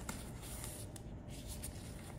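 Dry, porous coral rock scraping and rubbing against coral as gloved hands press one piece down onto another. The sound is an irregular, scratchy grating, with the crinkle of the gloves.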